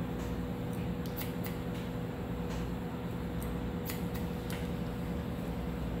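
Hair scissors snipping wet hair at the nape of the neck: a series of faint, irregular snips, over a steady background hum.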